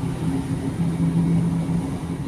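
Steady low mechanical hum with a couple of steady low tones, typical of supermarket freezer cabinets and their refrigeration units.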